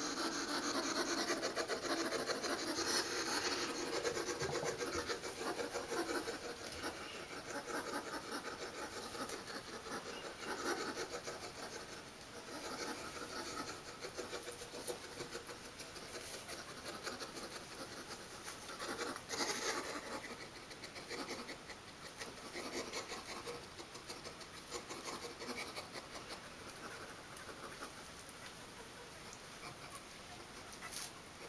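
Toothbrush bristles scrubbing through a hedgehog's quills: a scratchy rasping in rapid strokes as matted food is worked out. It is louder in the first half, with one brief louder burst about twenty seconds in.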